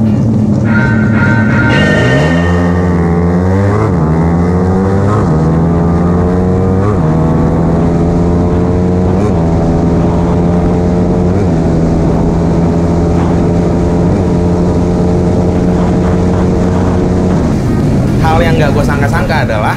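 Honda Tiger single-cylinder motorcycle engine under hard acceleration, heard onboard. Its note climbs and drops back with each of about six upshifts, every gear held longer than the last, and it cuts off near the end.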